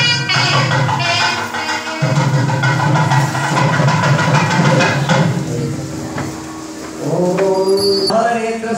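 Loud devotional temple music: a shrill reed wind instrument playing a bending melody over a low drone and hand drums. The music thins a little after about five seconds, and a group chant of voices starts about a second before the end.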